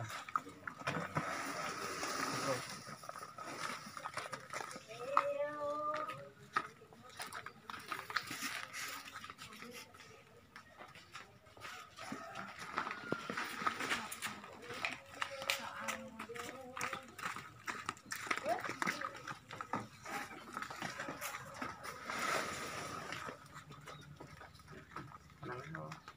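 Indistinct voices of people talking in short spells, with scattered knocks and rustles from potted fruit plants in grow bags being handled and loaded.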